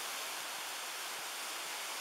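Rough surf surging and foaming over a rocky shore, a steady rushing noise.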